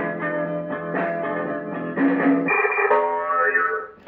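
Entry caller (llamador) jingle number 2 from the caller box on a Ranger RCI-63FFC1 CB radio: a short electronic tune of held notes stepping in pitch, ending with a fade just before the end.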